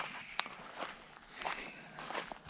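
Footsteps walking through a vegetable garden, soft and uneven steps on soil among leafy plants, with one sharp click about half a second in.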